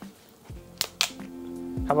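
A plastic soda bottle's screw cap is twisted open, with a couple of short sharp clicks about a second in. Background music comes in underneath about half a second in.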